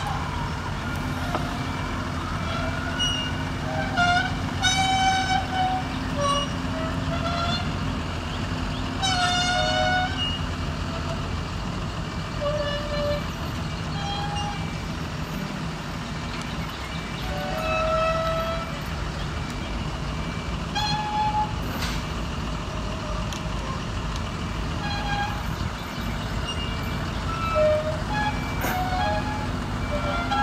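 Crawler crane's diesel engine running steadily while it holds a concrete bridge beam in the air. Short, high-pitched chirps come and go over the engine sound, loudest about four, nine and twenty-seven seconds in.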